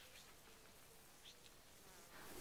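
Near silence, with a faint, on-and-off buzz of a flying insect.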